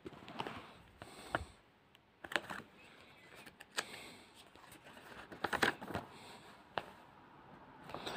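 Soft rustling and light clicks of a CD booklet's pages being handled and turned, in a few scattered bursts with quiet between them.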